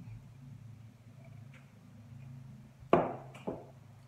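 A low steady hum, then two sharp knocks about half a second apart near the end, the first the louder: glass beer mugs being set down on a table after a drink.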